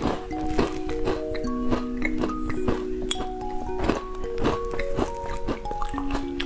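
Background music playing a simple melody of held notes, with close-miked mouth sounds of eating and drinking (short wet clicks, several a second) over it.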